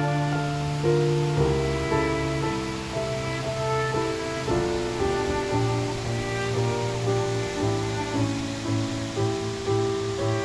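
Slow instrumental background music, with notes held for about half a second to a second each, over a steady rush of falling water.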